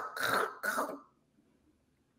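A woman making three short, throaty mouth sounds within about a second, imitating swallowing and eating.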